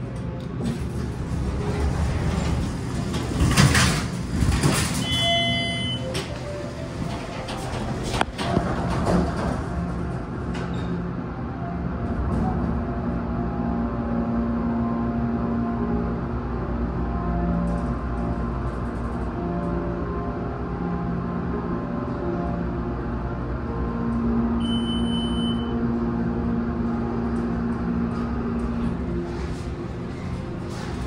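Elevator doors sliding shut with a rattle and bump, and a short electronic chime just after. Then the MEI hydraulic elevator's submersible pump motor hums steadily as the car travels, with another chime near the end.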